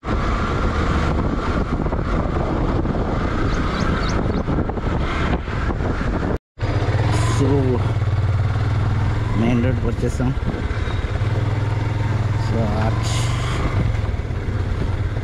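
Road vehicle on the move: steady engine hum with heavy road and wind noise, briefly cut off about six seconds in.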